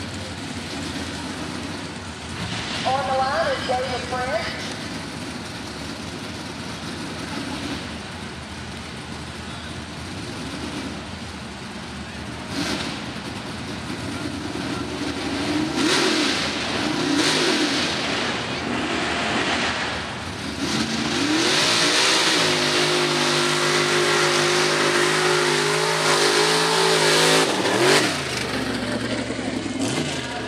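Pickup truck's engine revving in short blips at a mud bog start line, then held at full throttle for about six seconds as it runs through the pit, before dropping off sharply near the end.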